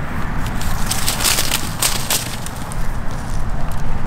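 Wind buffeting the microphone in a steady low rumble, with a stretch of crackling, rustling noise between about one and two seconds in, like dry leaves crunching.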